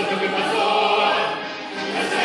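A group of children singing together in chorus over instrumental accompaniment.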